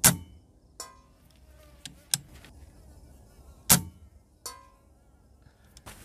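Benjamin Marauder .177 pre-charged pneumatic air rifle firing: two sharp reports about three and a half seconds apart. A fainter click with a brief ring follows each about a second later.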